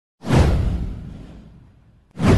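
A whoosh sound effect for an animated title intro: one sudden swoosh with a low rumble under it, sweeping down in pitch and fading away over about a second and a half.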